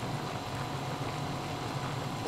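Crab pieces in sauce bubbling steadily in a wok as they are reheated, a soft continuous crackle.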